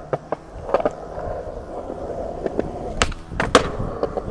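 Skateboard wheels rolling on concrete, with a few light clacks early on. Near the end come two sharp loud cracks half a second apart: the tail popping and the board landing a kickflip.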